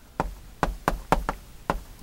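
Chalk tapping and clicking against a chalkboard while words are written by hand, about seven short sharp taps in two seconds.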